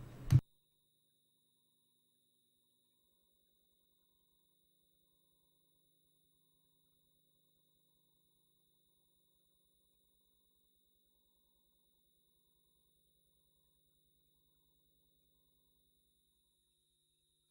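A last scrap of speech cuts off abruptly within the first half second, then near silence: the audio feed is dead, with only a very faint steady high-pitched tone.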